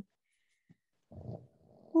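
A dog snoring: one short, rough snore about a second in, with a fainter breath following.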